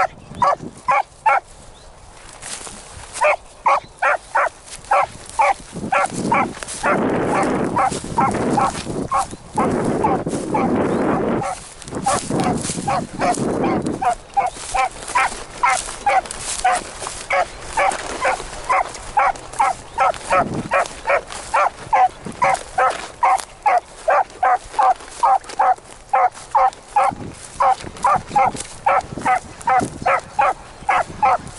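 A beagle gives steady, rapid chop barks, about two to three a second, as it trails a rabbit's scent line. Wind buffets the microphone through the middle stretch.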